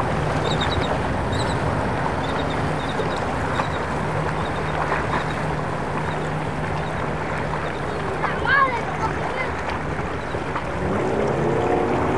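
Twin Suzuki 175 four-stroke outboard motors running at low speed, a steady low hum over the wash of water along the hull. The engine pitch and loudness rise near the end as the throttle opens.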